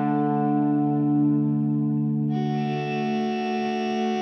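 Slow doom/stoner metal instrumental: effects-laden electric guitar holding sustained, ringing chords, with no drum hits standing out. A little past halfway, a brighter, higher layer of held notes comes in over the chord.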